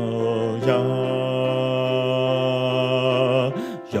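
A cappella choir singing, with the bass line to the fore: a low voice holds a long sung 'ya' under the upper voices' quick 'ya la na' syllables. The held note breaks off shortly before the end, and the singing picks up again on 'yom'.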